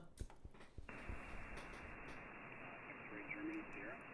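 Shortwave receiver audio on 40-meter single sideband: a few soft clicks, then steady band hiss comes in about a second in, with a faint, weak voice of a distant station heard under the noise near the end.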